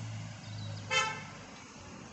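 A single short vehicle horn toot about a second in, over a steady low hum that fades out shortly after.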